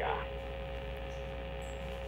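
Steady electrical hum with a few faint steady tones: the line noise of a telephone call, heard in a pause between the caller's words.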